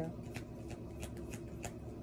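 A tarot deck being shuffled by hand: a string of light, irregular card clicks.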